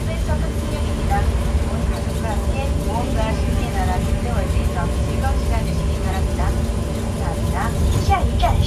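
Steady low rumble and hum of a monorail car running along its track, heard from inside the car, with indistinct voices talking in the background.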